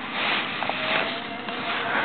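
Plastic shopping bag rustling and crinkling as it is lifted and swung with a cat riding inside, in uneven surges with a few small crackles.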